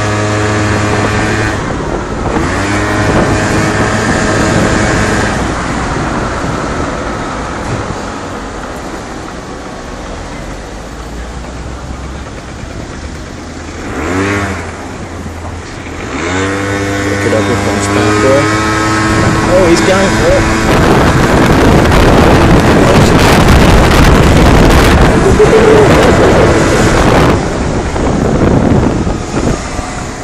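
Moped engine running in town traffic, its pitch rising several times as it pulls away and speeds up. In the second half a loud, even rushing noise drowns it as the moped gathers speed.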